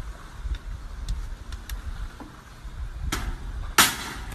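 Low rumble with a few faint clicks, then a sharp crack about three seconds in and a louder, sharp bang just before the end.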